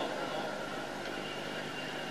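A pause between recited verses of Quran recitation: steady background hiss and room noise with a faint steady high tone. The reverberant tail of the reciter's voice dies away at the start.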